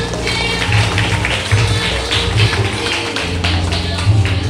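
Background music with heavy bass and a steady percussive beat.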